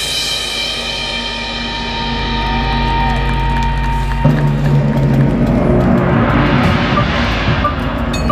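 Drum and bugle corps playing loud, sustained chords over timpani and drums. The chord changes about halfway through, and a swell of cymbal-like noise builds toward the end.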